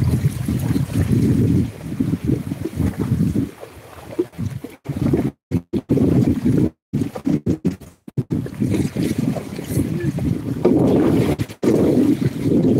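Wind buffeting a phone's microphone: an uneven, fluttering low rumble. The audio cuts out completely several times in brief gaps around the middle.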